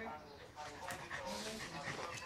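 A dog vocalizing in play with a few short sounds while crouched in a play bow.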